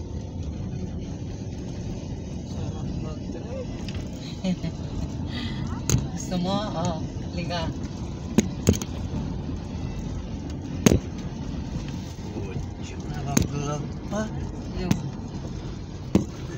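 Road and engine noise heard inside a moving vehicle: a steady low rumble, broken by several sharp knocks or rattles, the loudest about eleven seconds in.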